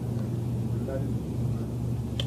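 Faint, distant voice speaking off-microphone, barely above a steady low electrical or ventilation hum in a lecture room.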